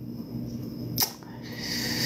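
A single sharp click about a second in, over a faint steady hum, with a soft hiss building near the end.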